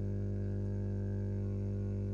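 Steady low electrical hum, with a strong low tone and a few fainter overtones above it, unchanging throughout.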